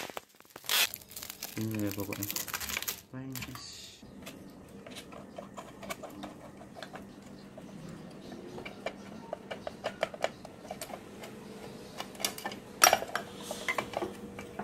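Packing tape pulled off a hand dispenser and torn, with a small plastic bag of parts crinkling, in the first few seconds. Then small ticks and clicks of a screwdriver undoing the screws of a sewing-machine motor's cover, with a few louder clicks near the end.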